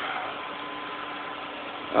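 An engine idling steadily, with a faint steady hum in it.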